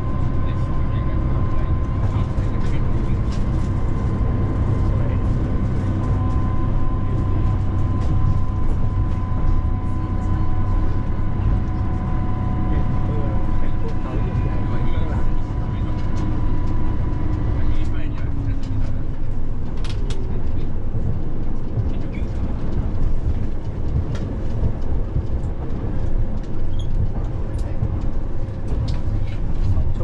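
Train running, heard inside the passenger car: a steady low rumble, with a faint steady whine that fades out about two-thirds of the way through.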